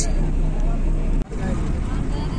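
Steady low rumble of a bus engine and road noise heard from inside the bus, with people's voices talking over it. The sound breaks off for an instant a little past a second in, then resumes.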